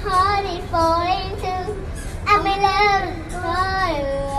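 A young girl singing into a karaoke microphone in two sung phrases with a short break between them. Only her voice is heard: the backing track plays in her headphones.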